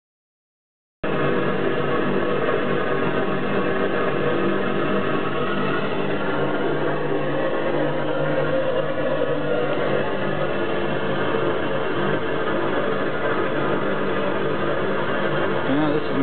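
Homemade Babington ball waste-oil burner firing on a little over 20 pounds of air pressure: a steady, loud noise of air and flame with a constant hum. It starts suddenly about a second in.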